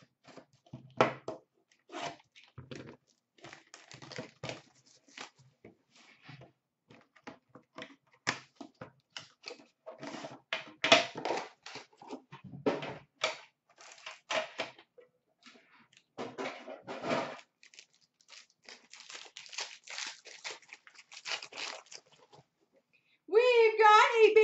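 Plastic wrap and packaging being torn and crinkled off a box of hockey cards: a run of irregular crackles and rustles with a few sharper snaps.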